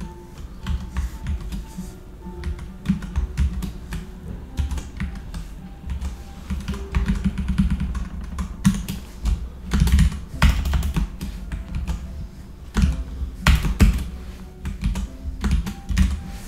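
Typing on a computer keyboard: irregular runs of keystrokes, with background music underneath.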